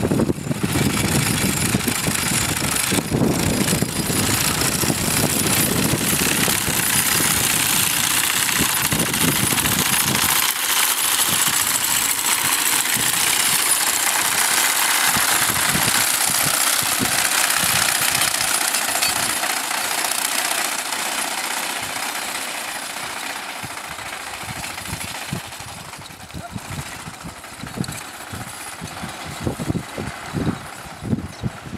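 Horse-drawn sickle bar mower pulled by a mule team, cutting hay: the knife chatters rapidly back and forth in the cutter bar, a steady dense clatter. It grows fainter over the last third.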